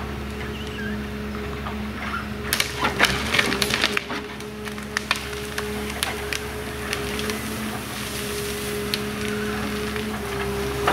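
Ecolog 574E forwarder's diesel engine and crane hydraulics running with a steady drone and whine, while the grapple crushes a heap of conifer branches: a burst of cracking and snapping a few seconds in, the engine note sagging briefly under the load, then scattered single snaps.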